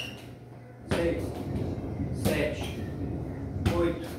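A voice counting exercise repetitions aloud in Portuguese, one count about every second and a half, three counts in all.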